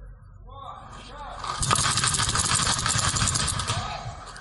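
A rapid burst of paintball fire, a dense run of sharp cracks and paintballs smacking nearby, starting about a second and a half in and lasting about two seconds.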